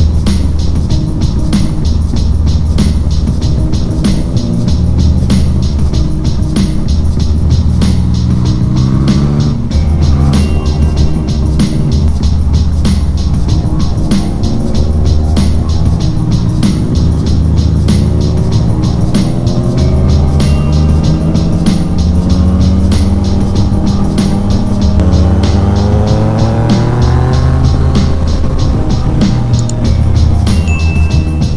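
Yamaha Tracer 900 GT's three-cylinder engine with an Akrapovic exhaust, rising and falling in pitch as the rider accelerates and eases off, with a long climb in revs near the end. Background music with a steady beat plays over it.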